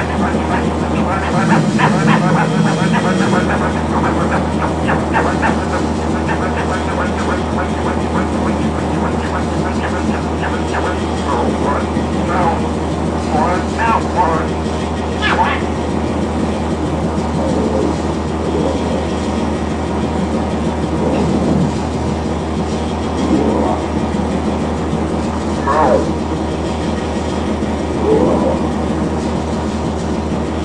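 Experimental drone music: a steady low hum under a dense, crackling layer of wavering pitched tones. In the second half, slow swooping glides rise and fall every couple of seconds.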